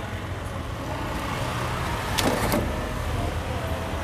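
Steady low rumble of road traffic, with a short clatter of two or three sharp knocks a little past two seconds in.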